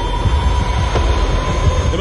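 Film-trailer sound bed: a loud, dense low rumble with a thin sustained high drone held over it.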